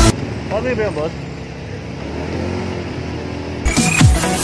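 Live street sound: a motorcycle tricycle's engine running with a steady low hum, and a short voice about half a second in. Music cuts back in near the end.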